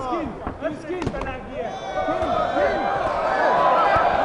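Boxing crowd yelling, then cheering that swells into a steady roar from about halfway through. A few sharp smacks of gloved punches land about a second in.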